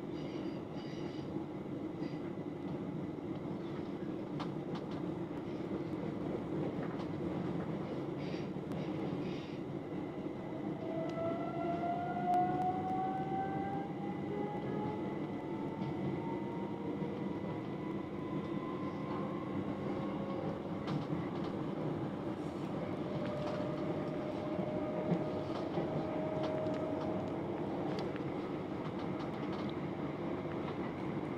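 Class 357 Electrostar electric train running along the line, heard from inside the carriage: a steady low rumble of wheels on rails. A faint whine rises in pitch about a third of the way through and levels off later on.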